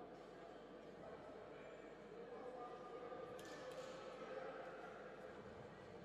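Faint sports-hall ambience: distant voices from spectators, with a brief knock about three and a half seconds in.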